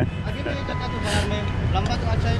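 Steady low engine rumble of motorbikes and street traffic, with people talking in the background.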